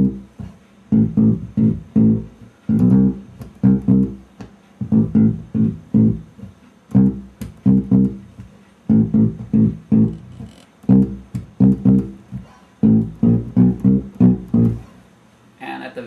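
Electric bass guitar playing a bridge that moves from C to A minor, in short groups of plucked notes with brief gaps between them, and a pause near the end. Recorded through a camera microphone.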